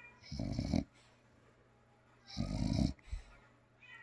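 Bulldog snoring while relaxed under a chin rub: two short snoring breaths, each about half a second long and about two seconds apart.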